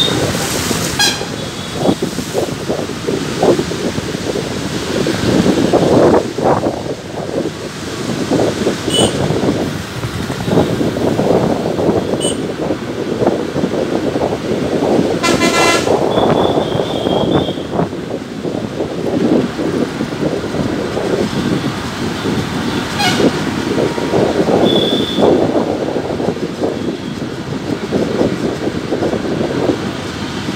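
Road and engine noise heard from inside a moving vehicle, with several short vehicle horn toots sounding through the traffic; the loudest horn blast comes about 15 seconds in.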